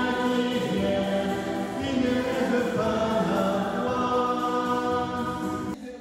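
Church choir singing a hymn, several voices holding long, slow notes. It breaks off sharply near the end.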